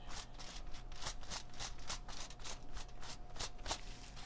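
Tint brush stroking lightener onto a hair section laid on aluminium foil, in a quick even run of about four to five brush strokes a second that dies away shortly before the end.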